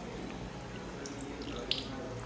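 Faint, steady running water from a kitchen tap, with one light click near the end.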